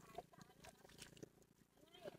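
Near silence, with a few faint, short distant calls.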